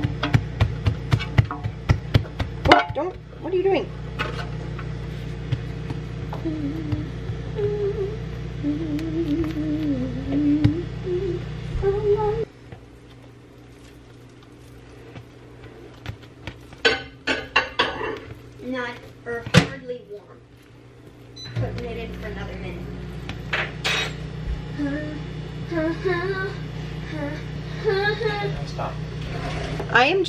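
A steady low hum with soft voice-like sounds over it; the hum cuts out for about nine seconds near the middle and then comes back. A quick run of light taps and knocks sounds in the first few seconds while dough is handled on a counter.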